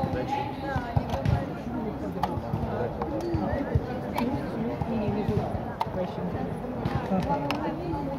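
Blitz chess being played: plastic chess pieces knocked down on the board and the buttons of a mechanical chess clock pressed, several sharp clacks at irregular moments, over steady background chatter of people talking.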